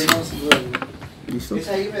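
Two metallic clicks from a Walther SP22 M1 pistol being handled, the sharper about half a second in, as the magazine release is pressed and the magazine is drawn out.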